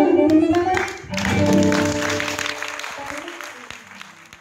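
Gypsy jazz band with guitars, violin and double bass and a female singer finishing a song: the voice slides down on the last note. About a second in, the final chord rings on under audience applause, and both fade away gradually.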